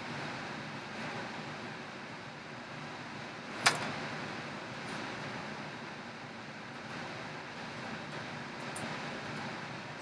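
Steady low room noise, with one sharp tap a little over a third of the way in and a few faint ticks near the end.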